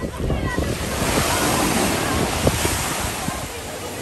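Ocean surf washing in at the foot of a rock, a rush of whitewater that swells about half a second in and eases off near the end, with voices of people in the background.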